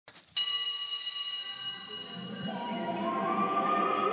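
A bright, bell-like chime struck once just after the start, its many high tones ringing on and slowly fading. About halfway through, a lower tone comes in and slowly rises in pitch over a fuller, low musical layer.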